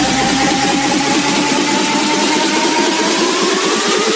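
Electronic dance music in a build-up: a synth sweep rising steadily in pitch over fast repeated drum hits, with the deep bass cut out.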